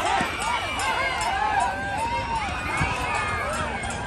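A large crowd of people shouting and calling over one another as a bull runs loose.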